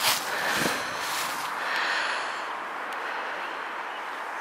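A person breathing close to the microphone, a few soft breaths over a steady outdoor hiss, with a brief bump at the very start.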